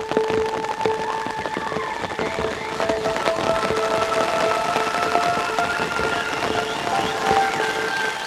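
A granular pad built from a field-recording sample, played through Soundtoys Crystallizer granular echo set to 1200 cents with the recycle turned up, so each note's echoes climb in octaves. Held tones stack an octave apart over a crackling, grainy texture, and a new note joins about two and a half seconds in.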